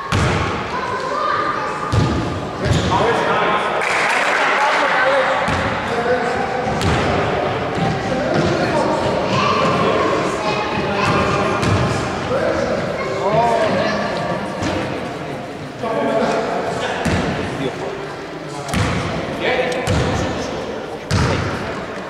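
Basketball bounced on a hardwood court, a handful of sharp thuds spread through, several near the end, among voices calling out in an echoing sports hall.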